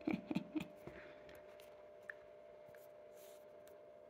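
A few light clicks and taps in the first second as a fountain pen is handled, then only a faint steady hum.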